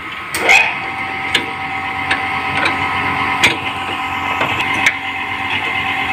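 Steady workshop machine hum with several fixed high tones, over which come scattered sharp clicks and knocks from metal parts and tools being handled on an opened transformer.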